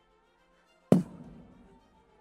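Soft background music with sustained notes, broken about a second in by a single loud, sharp thump that dies away over about half a second.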